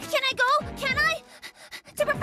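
A high-pitched cartoon voice makes two short, wordless, bending vocal sounds in the first second, over playful background music.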